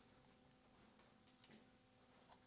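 Near silence: room tone with a faint steady electrical hum and a few faint clicks about a second in.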